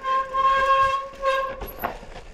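Mountain bike disc brakes squealing under hard braking on a steep rocky drop: one steady, high-pitched howl that dips briefly about a second in and stops near the end, followed by a sharp knock from the bike over the rocks.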